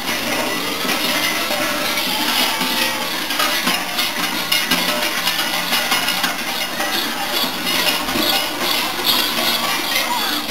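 Many large cowbells worn by Perchten clanging and jangling without pause, a dense metallic din.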